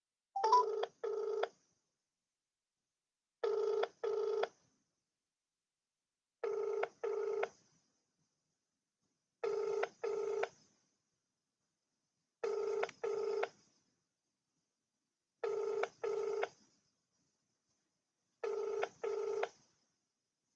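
A telephone ringing in a double-ring cadence: two short rings in quick succession, repeated seven times about every three seconds.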